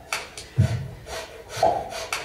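Beatboxing: a steady vocal beat with a low kick about once a second and short, crisp hissing hi-hat strokes in between.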